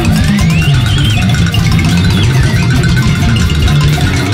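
Loud, dense rock band music: bass guitar and drums under a high lead line that slides steeply up in pitch in the first second and then wavers.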